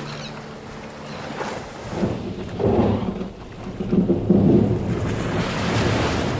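A low rolling rumble like thunder swells up twice, then gives way to a hissing wash of surf near the end.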